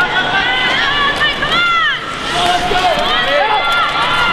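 Spectators at a short-track speed skating race shouting and cheering, several voices yelling at once in rising-and-falling calls, the loudest about one and a half seconds in. Skate blades scrape on the ice underneath.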